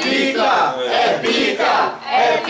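A group of people singing and chanting together in rhythm as a birthday song, loud and lively, with hand clapping.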